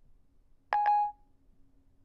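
iPhone 4S Siri chime: a single short electronic beep about 0.7 s in, Siri's tone as it stops listening to the spoken request and begins to process it.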